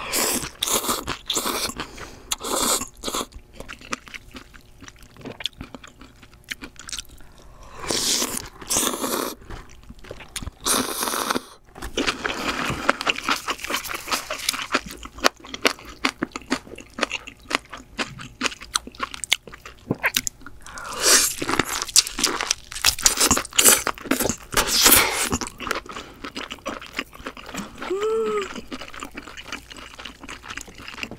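Close-miked eating sounds: noodles slurped from broth, then steamed lobster and crab chewed with wet, crunchy bites, dense and irregular throughout.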